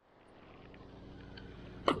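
A single sharp splash near the end as a tarpon strikes a live mullet bait at the water's surface, after a stretch of faint quiet.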